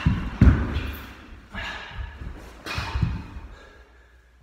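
A run of heavy thumps from a person stamping and landing on a wooden floor, the loudest about half a second in, the rest spaced over the next few seconds and dying away near the end.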